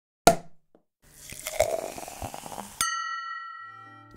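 Logo intro sound effect: a sharp knock, then a rushing hiss that swells with small clicks, ending in a single glass strike that rings on and fades away.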